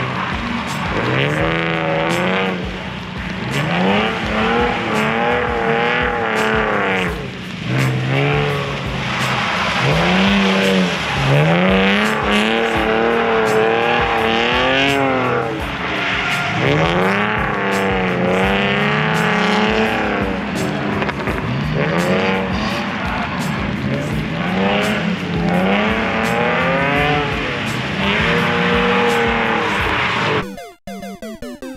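BMW E46 M3's straight-six engine revving up and falling back over and over through a drift run, with tyres squealing and sliding.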